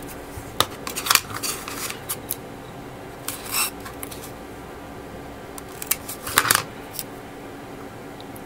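Small handling noises of yellow Tamiya masking tape being worked around a small clear plastic kit part: scattered short clicks and crinkles, loudest about six and a half seconds in.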